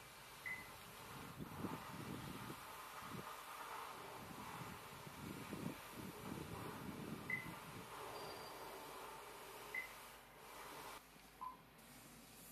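Short electronic confirmation beeps from a 2016 Honda Pilot's infotainment touchscreen as it is tapped: three brief high beeps spaced a few seconds apart, then one lower beep near the end.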